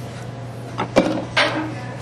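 Kitchen handling as thick sauce is poured onto chopped vegetables in a bowl: a couple of sharp knocks of utensil or container against the dish, about a second in and again half a second later, over a steady low hum.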